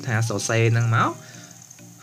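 Speech for about the first second, then a pause of about a second filled by a faint steady hiss.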